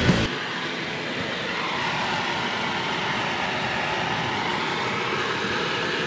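Rock music cuts off just after the start, leaving the steady hiss of a lit gas heating torch flame burning.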